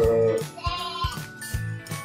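A sheep bleats once near the start, with a fainter, higher bleat about a second in, over background music with a steady beat.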